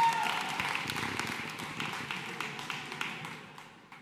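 Audience applause, scattered clapping with a brief held cheer at the start, dying away to near quiet by the end.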